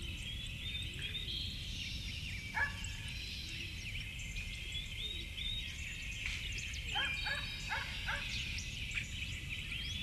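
Birds chirping: many short rising and falling chirps overlap, with a louder call about two and a half seconds in and a cluster of calls around seven to eight seconds. A low steady hum lies under them.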